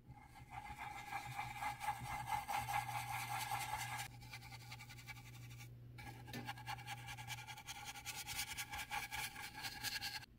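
Dense round blending brush scrubbing white paint into textured canvas in quick short strokes. The bristles rasp against the weave, ease off around four seconds, pause briefly just before six and then start again.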